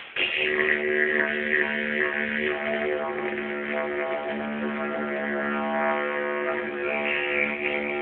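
Didgeridoo drone played continuously on one steady pitch, with shifting overtones above it and a brief break at the very start. Recorded through a cellphone microphone, so the sound is thin with no high end.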